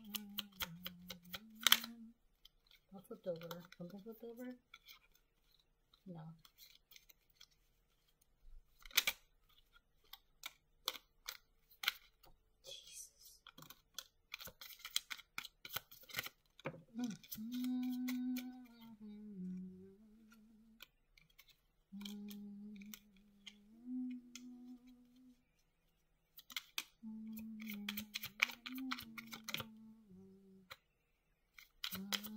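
A woman humming a tune wordlessly in several short phrases, between them sharp clicks and flicks of cards being shuffled and dealt onto a table, busiest in the middle.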